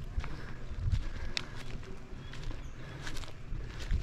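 Footsteps on dry eucalyptus leaf litter: irregular crunches and crackles of leaves and bark underfoot.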